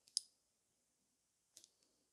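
Near silence broken by light, sharp clicks of hard nails and nail-art tools being handled. There is one click about a fifth of a second in, the loudest, and a quick cluster of two or three fainter ones about a second and a half in.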